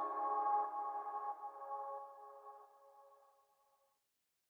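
The final held chord of a pop ballad ringing out and fading away, gone about two and a half seconds in.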